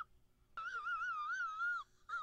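A faint, high-pitched, wavering vocal sound, like a squeaky drawn-out 'mmm' or squeal, starting about half a second in and lasting just over a second.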